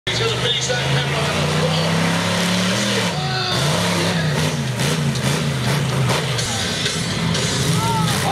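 Monster truck engine under heavy throttle, its pitch climbing steadily and then dropping near three seconds in. It then rises and falls again and again as the truck goes over a pile of crushed cars.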